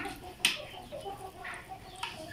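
Chickens clucking, with one sharp clink of a metal spoon against a ceramic bowl about half a second in.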